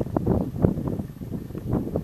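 Wind buffeting the camera's microphone outdoors: a low, uneven rumble with irregular short gusty bumps.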